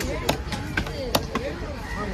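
Large knife chopping through a diamond trevally fillet into a wooden chopping block: several sharp chops, about two or three a second, as the fillet is cut into steaks.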